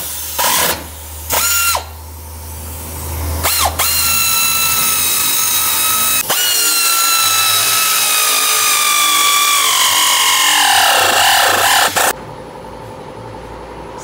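Power ratchet driving exhaust clamp bolts. It gives three short bursts, then one long run of about eight seconds whose whine slowly falls in pitch and cuts off suddenly near the end.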